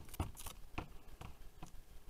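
Faint handling noise of a USB cable being uncoiled by hand: a few light clicks and taps with a brief rustle in the first half second.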